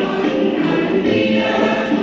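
A women's choir singing together, with long held notes.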